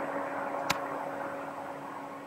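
Steady machine hum with a hiss from a video of a MultiJet 3D printer running, heard through a lecture hall's loudspeakers, with one sharp click under a second in.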